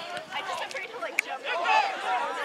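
Several voices calling out and talking over one another on a rugby pitch, with one sharp click about a second in.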